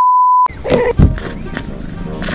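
A steady, loud, single-pitch test-pattern beep that cuts off abruptly about half a second in. It is followed by a busy mix of music and sound effects with a loud low thud about a second in.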